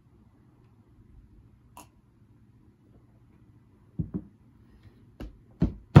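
Someone drinking soda from a glass mug: a few soft, low swallowing gulps in the second half, then a sharp knock as the glass mug is set down on the table at the very end.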